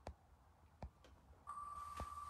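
Two faint clicks, then about one and a half seconds in a steady high-pitched tone starts from an online spin-the-wheel name picker as its wheel begins to spin.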